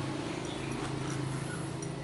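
A steady low mechanical hum with a few faint ticks.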